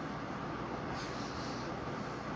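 Quiet, steady room noise with faint soft handling as hands press pizza dough into a round metal pan and work it up the sides.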